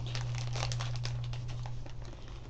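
A plastic candy bag crinkling in irregular rustles as it is handled, over a steady low electrical hum.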